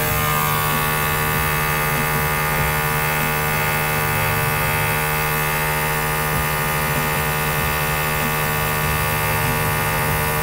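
Small airbrush compressor running with a steady hum, and a steady hiss of air blowing through the airbrush.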